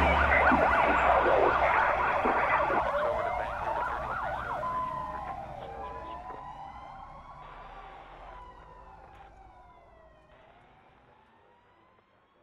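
The song's last chord rings out and fades while an emergency-vehicle siren wails, its pitch rising and falling slowly, and the whole sound dies away over about ten seconds.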